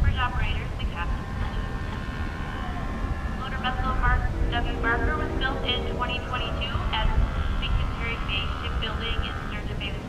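Indistinct voices talking, too unclear to make out words, over a steady low rumble.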